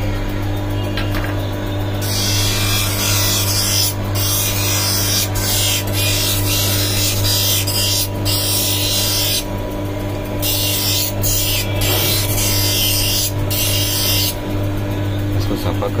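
Hand lens edger's motor running with a steady hum while a blue-cut eyeglass lens is pressed against its grinding wheel: a harsh grinding hiss comes in several bouts from about two seconds in until near the end, broken by short pauses. The lens edge is being ground down because it is still too big for the frame.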